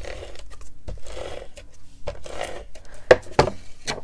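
Adhesive tape runner rolled along the back of a piece of paper in three short strokes about a second apart, then a few sharp clicks near the end as the paper and dispenser are handled.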